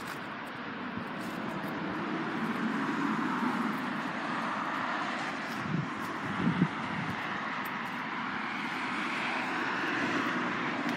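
Steady distant rushing drone of an aircraft passing overhead, slowly swelling, with a couple of soft bumps a little past halfway.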